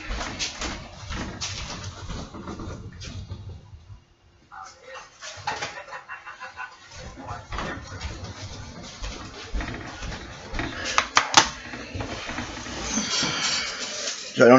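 Footsteps and scattered small knocks of a person walking across a room and back, with handling noise close to the microphone near the end.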